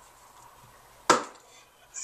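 A single sharp knock a little over a second in, with a short fading tail.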